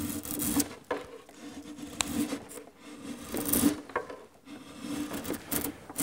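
A hand carving tool scraping and shaving along the edge of a wooden carving in several separate, unevenly spaced strokes, the strongest about three and a half seconds in.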